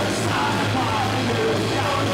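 Punk rock band playing live: distorted electric guitars and drums, with a shouted lead vocal over them, recorded on a camcorder's built-in microphone in the club.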